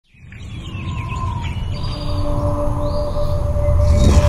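Birds chirping in a forest over a low, steady music drone that fades in from silence and swells louder.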